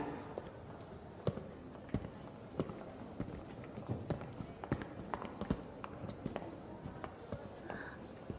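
Boot footsteps on a hard floor: irregular sharp clicks, roughly two a second, as a couple of people walk in.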